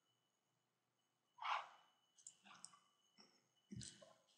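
Near silence. A short breath comes about one and a half seconds in, followed by a few faint clicks and another brief sound near the end.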